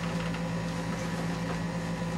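A steady low hum at one constant pitch, with faint rustling as a person sits down on a padded bed.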